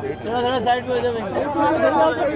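Several men talking at once, the voices overlapping in casual chatter.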